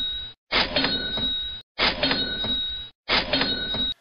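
Cash register 'ka-ching' sound effect played as a loop: the same roughly one-second clip with a bright ringing tone restarts about every 1.3 seconds, each time cut off sharply.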